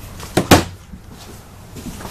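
An overhead cabinet door shutting: two quick knocks about half a second in, the second the louder.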